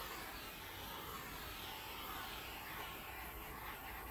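Small handheld butane torch flame hissing steadily as it is passed over wet acrylic paint to pop air bubbles.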